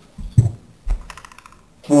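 A few knocks followed by a quick run of light clicks as the dishwasher's rack and silverware basket are handled.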